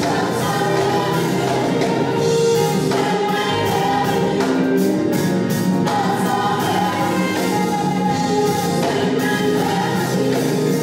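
A gospel praise team singing together as a small choir, backed by a band with drums and percussion.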